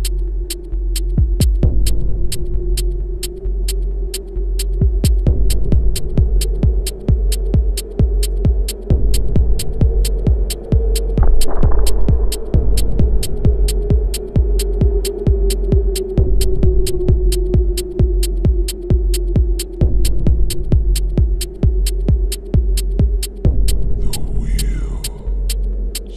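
Minimal techno track: sharp percussion ticks about two a second over a constant deep sub-bass, with a held, slightly wavering drone in the low mids. A short rising sweep comes about halfway through.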